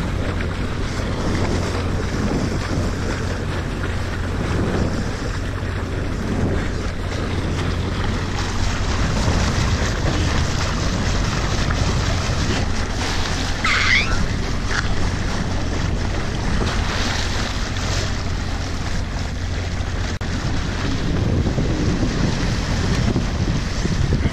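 Wind rumbling on the microphone over a steady wash of water along the hull of a sailboat under way. A brief high chirp sounds about halfway through.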